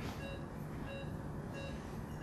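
Patient monitor beeping steadily, short high beeps about two a second that mark each pulse, over a low steady hum.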